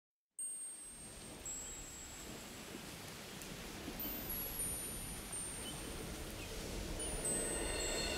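Opening of a recorded song: high tinkling chimes over a soft hiss that slowly swells, after a brief silence at the start.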